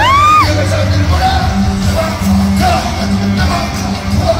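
Live concert music over an arena PA, with a steady bass beat and a vocal line. In the first half-second a fan's loud, high-pitched scream close to the microphone rises and falls over the music.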